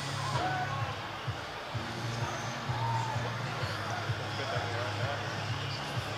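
Background music and distant crowd chatter over a steady low hum, with a few light clicks.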